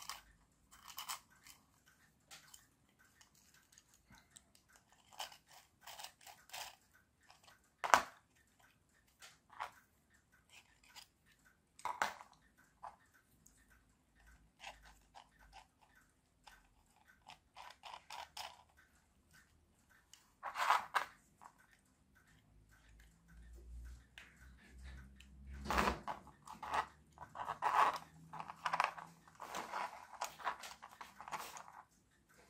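3D-printed plastic parts of a wind-up car's gear train being handled and fitted together: scattered light clicks and knocks, with a sharp click about eight seconds in and denser clicking near the end.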